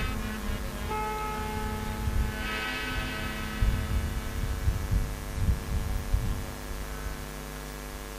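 A sustained musical drone: a held chord of steady tones with many overtones, one note changing about a second in.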